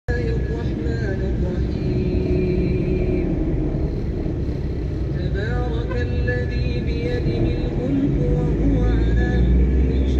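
Steady rumble of busy road traffic, with a voice chanting in long held, gliding melodic notes over it.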